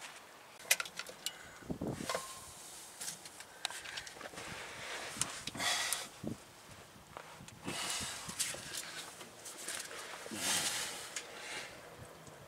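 Scattered sharp metal clicks and clinks of a breaker bar and extension being fitted to an oil filter wrench and pulled on a stuck oil filter, with a few short hissing rustles between them.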